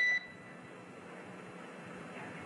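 A single short electronic beep on the mission-control radio loop, one steady tone lasting a fraction of a second at the very start, followed by steady low hiss on the line.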